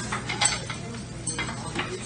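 Diner kitchen clatter: metal utensils and plates clinking a few times at the grill line, over a steady low hum.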